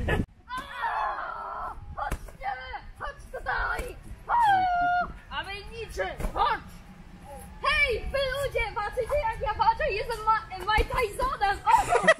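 Children's high-pitched voices shouting and squealing during a play fight, with a few short smacks.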